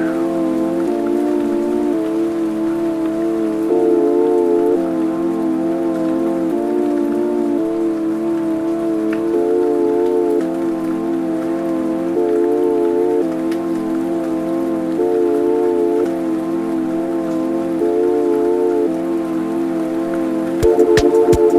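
Music: sustained synthesizer chords changing every second or two, over a faint steady hiss.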